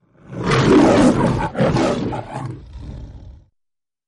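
The MGM logo's lion roar: two loud roars, the second beginning about a second and a half in and trailing off by about three and a half seconds.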